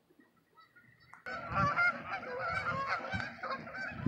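A flock of geese honking in flight: many overlapping honks that start suddenly about a second in.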